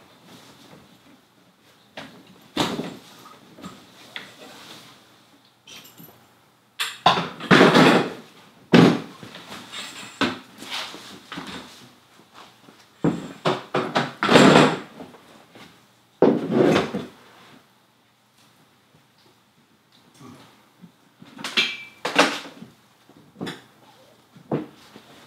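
Insulated fabric walls of a Clam Jason Mitchell ice fishing shelter rustling and its support bars knocking as they are taken out, in irregular bursts. The loudest bursts come about a third of the way in and near the middle.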